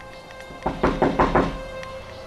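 A quick run of about six knocks on a door, over quiet background music.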